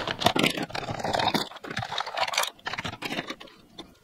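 Plastic lipstick and lip-gloss tubes clattering onto a wooden tabletop as a handful is tipped out and spread, many quick light clicks that thin out and fade over the last second or so.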